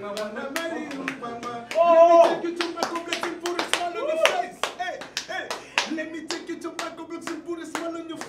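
A man singing with long held notes and sliding pitch, over a steady beat of hand claps at about two to three a second.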